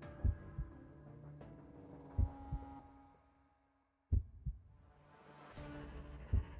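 A heartbeat sound effect: paired low thumps about every two seconds over a sustained droning pad. It fades away to silence a little before four seconds in, then the beats and drone start again.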